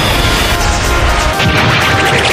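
Loud remix music with heavy crashing hits, its texture changing about one and a half seconds in.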